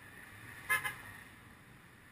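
A car horn gives two quick toots close together, a little under a second in, over faint steady city traffic noise.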